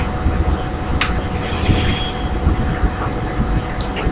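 Steady low rumbling background noise with a faint constant hum underneath, and a single sharp click about a second in.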